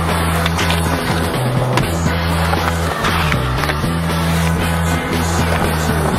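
Music track with a sustained bass line, mixed with skateboard sounds: urethane wheels rolling on rough concrete and a few sharp clacks of the board popping and landing.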